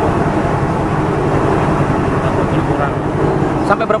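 A vehicle engine running steadily close by, an even low rumble through the whole stretch, with faint voices in the background.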